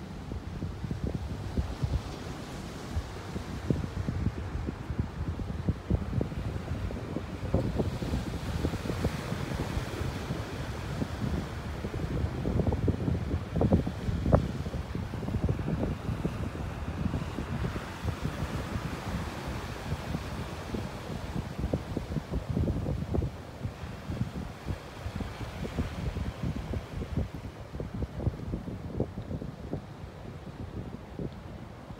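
Wind buffeting the microphone in uneven gusts, strongest about halfway through, over a steady wash of ocean surf.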